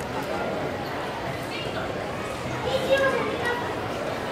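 Chatter of many overlapping voices, adults and young children, with no clear words; one voice rises a little louder about three seconds in.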